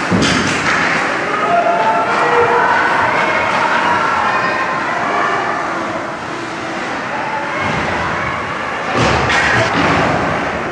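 Ice hockey rink during play: spectators' voices and calls overlapping, with sharp knocks from the play. The knocks come right at the start and again in a cluster about nine seconds in.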